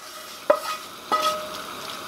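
A frying pan knocking against a mixing bowl as hot fried onions are scraped out of it, the knock ringing briefly, with a second ringing tap just after a second in. A faint sizzle and stirring of the food run underneath.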